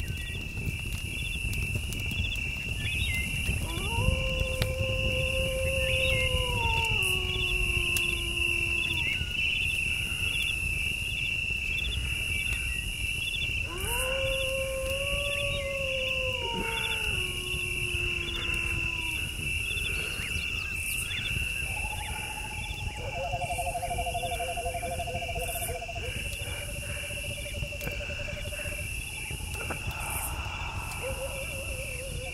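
Electronic ambient film score: a steady high drone pulsing in a regular beat, with a pulsing hiss above it and a low rumble beneath. Two long howl-like gliding tones rise, hold and fall in the first two thirds, and held, wavering tones follow near the end.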